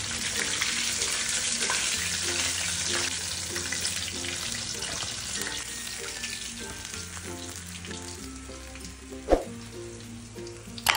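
Flour-coated chicken drumsticks deep-frying in hot oil: a steady sizzling hiss that slowly fades as a wire skimmer lifts a browned piece out. Quiet background music with low notes runs underneath, and there is one sharp knock near the end, the loudest sound.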